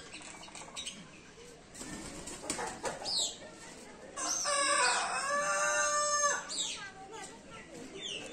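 A rooster crowing once: a single drawn-out cock-a-doodle-doo of about two seconds, starting about four seconds in. Short high chirps come just before and after it.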